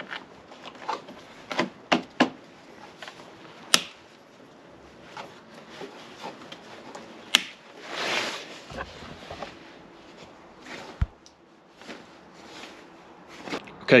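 Hands working in a motorcycle's airbox: scattered clicks and light knocks of plastic and metal parts being handled, a brief rustle about eight seconds in, and a dull thump a few seconds later.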